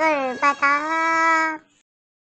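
Talking Tom's high-pitched, sped-up cartoon voice drawing out a 'bye-bye', the second 'bye' starting about half a second in and stopping about a second and a half in.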